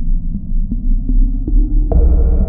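A deep, steady low drone with faint, regular ticks about three times a second: a dark background soundtrack under the title card.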